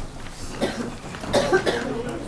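A person coughing in a meeting room, the loudest burst coming about a second and a half in.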